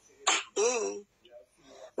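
A woman clearing her throat once, a short voiced sound about a quarter second in that lasts under a second.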